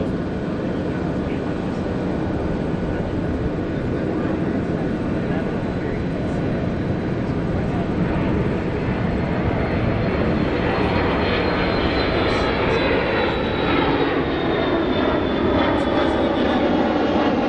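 Jet aircraft engine noise, steady and slowly growing louder, with a high whine that sets in about two-thirds of the way through and falls slowly in pitch.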